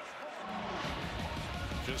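Broadcast sports-graphics music stinger: a low steady tone comes in about half a second in, swelling into heavy bass, with a whoosh near the end as the team-logo graphic wipes in.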